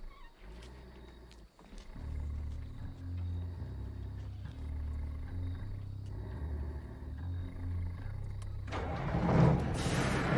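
Heavy semi-truck's engine rumbling low and steady, pulsing slightly, then rising sharply into a loud surge near the end. Film score plays underneath.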